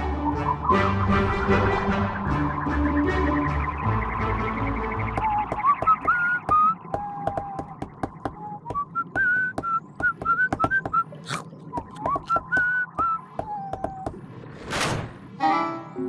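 Cartoon soundtrack: background music for the first several seconds, then a whistled tune of short notes over a rapid run of small clicks and crunches, which the crew is about to notice as a strange sound. A short whoosh comes near the end.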